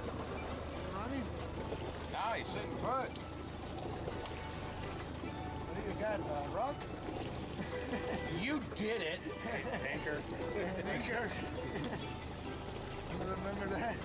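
Several people's indistinct voices, coming and going, over a steady low hum from the boat's engine.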